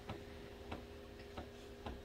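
Quiet room tone with a faint steady hum and four faint, unevenly spaced ticks.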